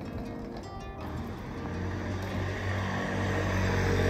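Background music, and from about a second in a vehicle on the road, its engine hum and road noise growing steadily louder.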